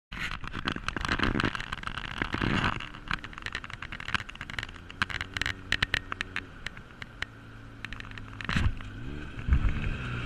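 Off-road vehicle engines on a gravel dirt track: a steady idle with scattered sharp ticks and crackles, then a few quick revs near the end as a side-by-side UTV comes up.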